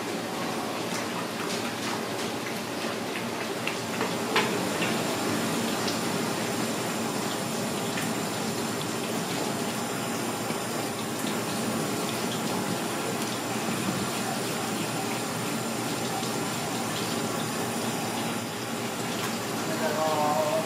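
Tap water running steadily onto a plastic cutting board while a fish is rinsed and scraped with a knife under the stream, with a few short knocks and scrapes.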